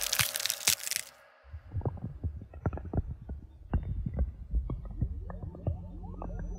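The song's music cuts off about a second in; after a short silence come irregular cracking and crunching sound effects over a low rumble.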